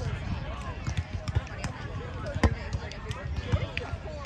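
Volleyball being struck by hands in play: a few sharp thumps, the loudest about two and a half seconds in.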